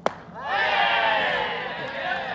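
A single sharp crack of a wooden bat hitting a baseball for a hit with runners on, followed about half a second later by loud shouting and cheering from many voices.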